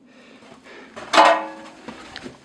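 A single metallic clang about a second in, from the steel body of an old mine ore car being struck, ringing briefly and fading.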